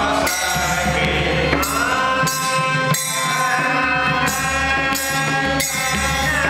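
Male voices singing a Vaishnava devotional song in dhrupad style over a held harmonium drone, with pakhawaj drum strokes and jhaanjh cymbals clashing about once every second or so.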